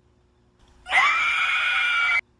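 A woman's loud, high-pitched screech, a drawn-out horror-style scream that starts about a second in, holds one steady pitch and then cuts off suddenly.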